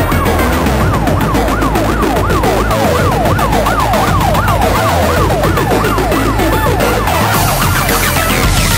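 Uptempo hardcore electronic music at 220 BPM: a siren-like wail sweeps up and down about three times a second over a fast, steady kick and bass. Near the end the mix fills out in the highs.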